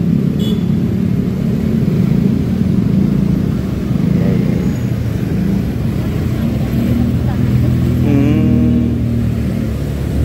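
Motorcycle engine running steadily with road and traffic noise while riding through slow city traffic, a constant low hum that shifts slightly in pitch.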